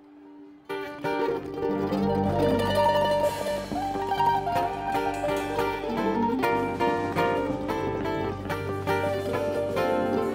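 A string band playing live: acoustic guitar, electric bass and drums with other plucked strings. After a soft held note, the full band comes in loud just under a second in and carries on at full strength.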